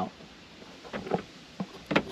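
Quiet car-cabin background with a few soft knocks, then a sharper click near the end, as interior trim is handled.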